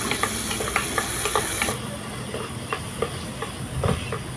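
Whole cherry tomatoes sizzling as they fry in hot oil in a clay pot. A spoon stirs them, giving irregular sharp clicks against the pot. The high sizzling hiss drops off about two seconds in.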